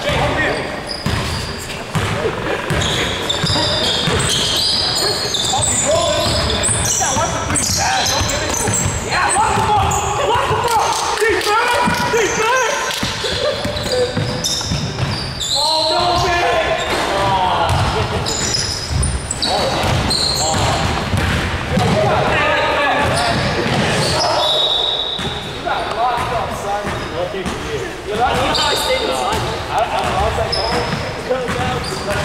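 Basketball game play in a gymnasium: a ball bouncing on the hardwood floor amid players' voices calling out, echoing in the large hall.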